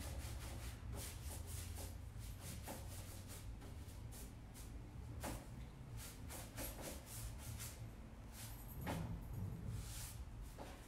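Paintbrush strokes on the painted oak drawer front and its edges: a faint, irregular run of short swishes of bristles brushing on chalk paint, over a steady low hum.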